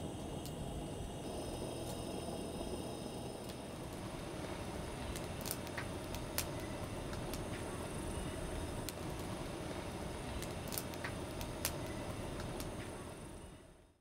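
Wood fire crackling in a fire pit, with scattered sharp pops over a steady hiss of burning, one pop louder about six and a half seconds in; the sound fades out near the end.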